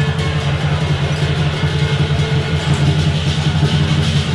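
Lion dance percussion: the large drum, gong and cymbals playing loud, dense and unbroken to accompany the lion.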